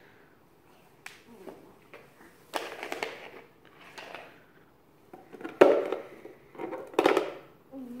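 Coins in hard plastic holders clacking and knocking against the wooden floor and into a small cardboard box: a series of irregular sharp clacks, the loudest a little past halfway.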